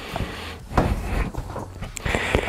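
Fabric of a large roll-top waterproof motorcycle bag rustling and crinkling as it is handled after being rolled shut and fastened, louder about a second in, with a few light knocks.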